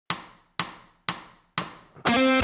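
Four evenly spaced metronome clicks, about two a second, each dying away quickly: a one-bar count-in from Logic Pro's metronome at about 122 bpm.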